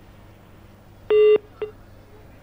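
Telephone line beep over faint line hiss: one short, loud, steady tone about a second in, then a briefer, fainter blip. It marks the phone connection dropping.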